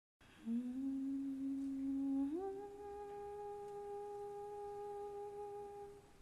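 A single voice humming a long held note, then sliding up to a higher note about two seconds in and holding it steadily.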